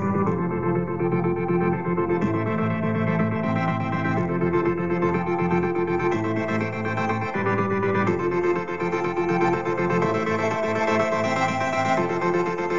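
Electronic music playing, with held chords that change about every two seconds, heard over a video call.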